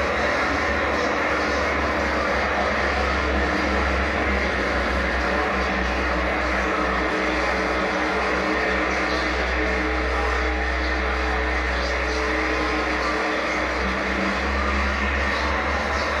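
Live death industrial noise: a dense, steady wall of distorted noise over a deep low drone, with no clear beat.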